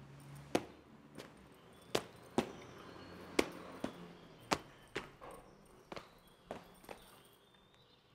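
Footsteps of hard-soled shoes on a hard floor: sharp, uneven steps at about one to two a second, fading out near the end.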